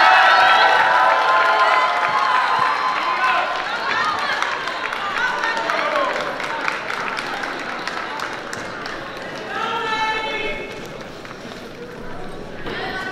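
Many voices cheering and shouting in a gymnasium crowd, loudest at first and dying down over several seconds. One voice calls out loudly about ten seconds in.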